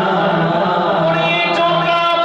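A man's voice chanting a devotional recitation into a microphone, holding long steady notes and rising to a higher held note about halfway through.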